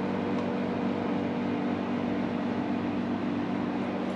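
Steady low mechanical hum of a running machine, with several low tones held steady and a soft noise over them.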